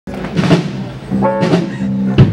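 Live rock band playing electric guitar and drum kit: held guitar notes, with two loud drum-and-cymbal hits about half a second in and around one and a half seconds in.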